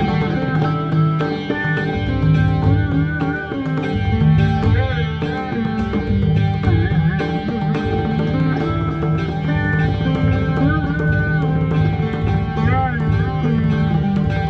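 Rudra veena playing Raag Durga with notes that bend and glide between pitches, over a steady low drone of its strings, accompanied by pakhawaj strokes keeping the beat of Teevra Taal.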